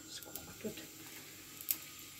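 Lavash rolls being laid one by one into a small frying pan: soft, faint taps and handling noise, with one sharp click near the end.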